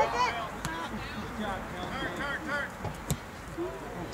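Faint, distant voices chattering, with a single sharp knock about three seconds in.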